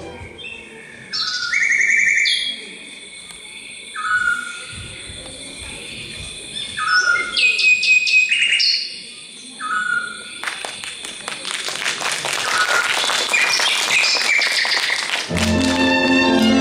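Birdsong on the show's music track: separate whistled chirps and short trills, thickening into a dense, busy chorus about ten seconds in. Music comes back in near the end.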